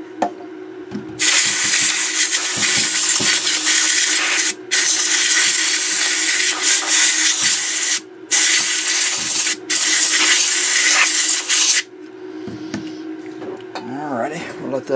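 Compressed air blowing in long hissing blasts, stopping briefly three times (about four and a half, eight and nine and a half seconds in), to blow cleaning alcohol off a transformer block. A faint steady hum sits underneath.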